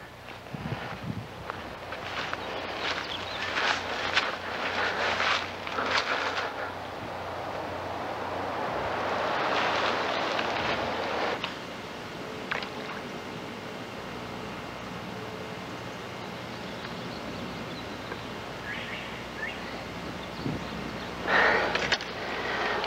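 Outdoor ambience: rustling and wind noise. A stretch of louder rushing noise about halfway through cuts off suddenly.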